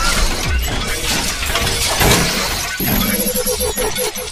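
Logo-intro sound effects: a loud, dense run of crashing, shattering impacts laid over music, with a rippling tone coming in near the end.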